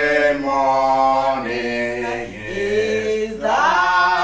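Singing in long held notes that slide from one pitch to the next, chant-like.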